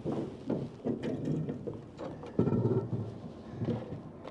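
Low thumps and rumbling from handling gear in an aluminium fishing boat while a hooked crappie is played and the landing net is picked up, loudest a little past the middle.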